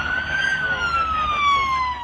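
A siren wailing: one slow rise in pitch that peaks about half a second in, then a long fall, over a low rumble.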